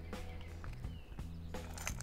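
Quiet background music with steady low notes, and a few faint clicks.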